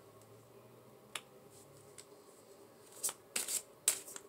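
Tarot cards handled by hand: one light card click about a second in, then a quick run of sharp card snaps and flicks near the end as a card is drawn and laid down.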